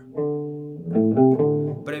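Clean electric guitar chords on a Danelectro, played as a blues progression: one chord rings for most of a second, then three quick chord changes follow.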